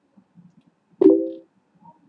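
A single short pitched sound about a second in, with a sharp start and a fade over about half a second, over a few faint low clicks.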